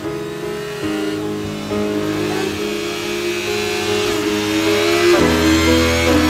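Background music, with an accelerating vehicle sound effect layered over it that grows louder toward the end.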